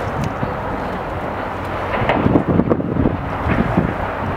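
Wind buffeting the microphone, in stronger gusts about halfway through, over a steady low rumble.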